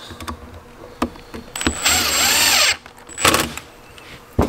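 Cordless power driver running in about a one-second burst with a high whine, driving a screw into the heater's end cap. A second, shorter burst follows a second later. Light handling clicks come before it.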